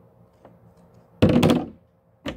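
Metal scissors set down on a tabletop: a faint tick, then a loud, short clattering thunk about a second in.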